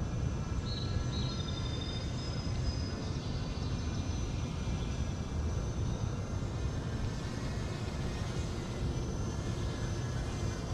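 Steady low rumbling outdoor background noise, with two faint short high chirps about a second in.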